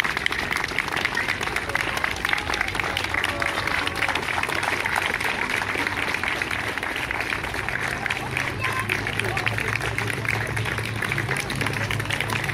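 A crowd of people clapping their hands, a dense, continuous clatter with voices over it. A low steady note comes in about two-thirds of the way through.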